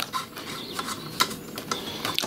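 Small clicks and scrapes of cables being handled and a patch cable's plug being pushed onto the TX socket of an LDG Z11 Pro antenna tuner, with a sharper click a little past the middle.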